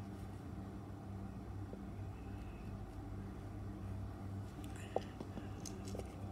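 Small clicks of hands working an electric plug with a screwdriver, with one sharp click about five seconds in and a few lighter ticks after it, over a faint steady low hum.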